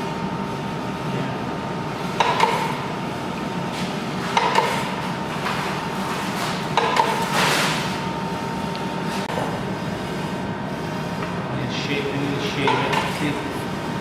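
Hand-cranked flywheel meat slicer turning slowly and slicing cured meat, with a clatter and swish about every two seconds as each stroke of the carriage passes the blade.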